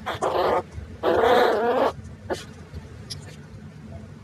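Ratcha (rat terrier–chihuahua) puppies growling in play as they wrestle: a short growl, then a longer one, in the first two seconds, followed by a few faint scuffles. The audio is pitched up by a voice-changer setting left on high.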